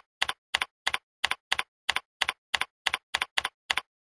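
Computer keyboard typing in an even rhythm of about three keystrokes a second, each stroke a quick double click, stopping shortly before the end.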